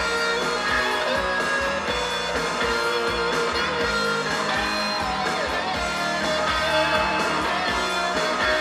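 A guitar-driven song playing from the car radio through a BMW E64 650i's Top Hifi sound system, whose newly installed amplifier is now giving audio output.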